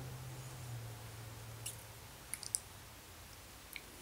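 A few small, faint clicks and taps of a plastic makeup compact being handled, over a low hum that fades out about halfway through.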